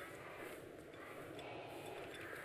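Faint, steady background ambience of a busy corridor, with distant indistinct voices.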